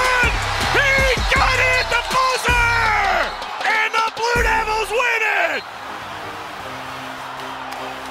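Excited shouting and whooping over a music track with a heavy bass line. About five and a half seconds in the shouting stops and the music carries on more quietly with steady sustained chords.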